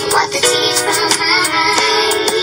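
An R&B song playing with a woman's voice singing over a backing track and drum beat; the recording is pitched up, which gives the voice a slightly artificial sound.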